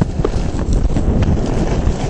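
Skis sliding fast over packed snow, chattering and scraping with irregular clicks, over a heavy rumble of strong wind on the microphone.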